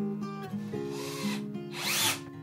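Cordless drill-driver running in two short bursts while driving screws into a flat-pack furniture panel, the second burst louder, over background acoustic guitar music.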